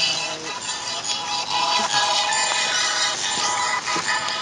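Hip-hop backing track playing between rapped lines, with sustained synth tones over the beat.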